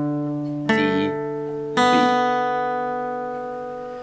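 Acoustic guitar picked one string at a time: notes of a power-chord shape on the A and D strings plus the open B string, in standard tuning. A new note is picked about a second in and another about two seconds in, each left ringing over the last and slowly fading.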